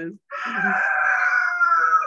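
A rooster crowing: one long call of about a second and a half, sliding slightly down in pitch toward the end, picked up over a video-call microphone.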